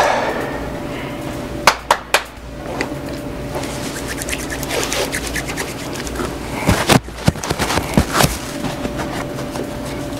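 Room tone with a steady electrical hum, broken by a few sharp clicks and knocks, in a cluster about two seconds in and again around seven to eight seconds in.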